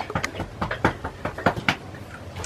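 Bull feeding at a hay manger: a run of irregular short crunches and rustles as it pulls and chews hay.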